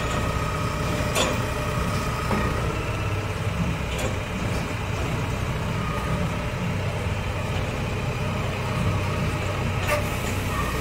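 Telehandler driving slowly on concrete with its engine running steadily, plus a few sharp clicks.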